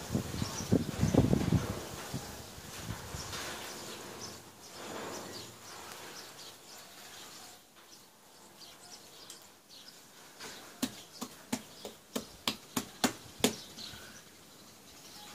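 A hand smearing and patting wet pepper paste over flat dough on a floured tabletop. Near the end comes a quick run of about ten light slaps, roughly three a second. A brief low rumble comes at the start.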